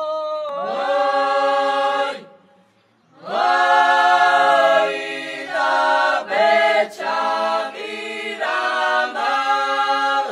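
Unaccompanied group singing of a Georgian folk song from Racha, men and women together in several parts on held chords. The voices break off about two seconds in, come back a second later, and go on in shorter phrases.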